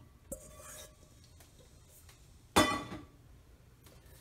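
Steel kitchen vessels being handled at a stone wet grinder's stainless-steel drum: a light clink near the start, then one louder ringing metallic clank about two and a half seconds in.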